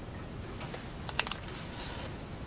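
Pen and paper being handled on a desk: a few light clicks a little after a second in, then a short rustle as the sheet of drawing paper slides.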